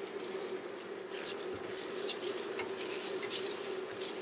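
Silicone spatula stirring dry barley grains and diced onion in a stainless steel pot, scraping and rustling across the metal bottom as the barley toasts. A steady low hum runs underneath.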